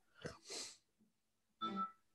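A man's soft laughter: three short, faint breathy bursts, the last about a second and a half in.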